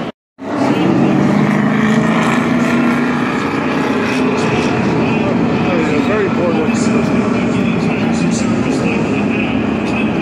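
A pack of NASCAR stock cars running at speed around the track, a loud steady drone of many V8 engines with a few rising and falling engine notes as cars pass. It starts abruptly about half a second in.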